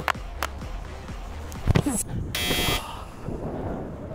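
A short, harsh buzzer sound effect about two and a half seconds in, lasting about half a second, the kind edited in to mark a missed penalty on a scoreboard. Faint background music and a soft thud come before it.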